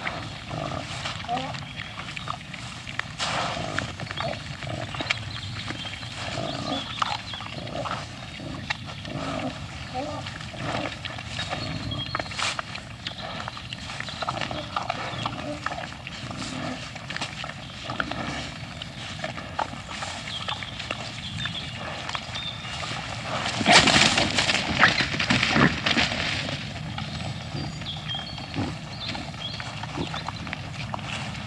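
A herd of wild boar feeding, with continuous grunting and snuffling, and a louder, harsher outburst as they scuffle over food about three quarters of the way through.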